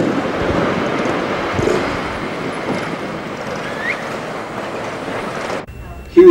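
Open-top convertible car on the move: steady wind and road noise, with wind rushing over the microphone. It cuts off sharply just before the end.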